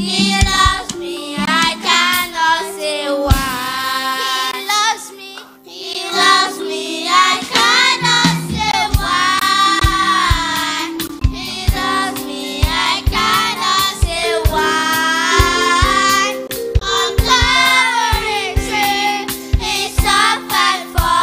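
A children's choir singing a worship song into microphones over band accompaniment with a steady beat, the voices pausing briefly about five seconds in.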